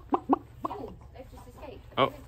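Domestic hens clucking: a few short, sharp clucks in the first second, then softer, lower clucks.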